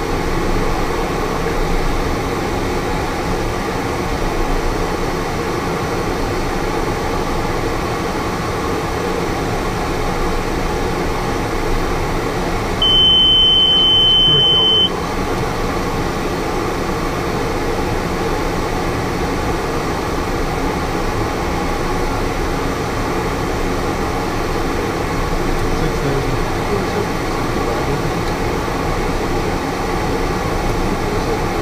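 Steady engine and airflow noise inside a small aircraft's cockpit in flight, with one high, single-pitched beep from the cockpit avionics lasting about two seconds near the middle.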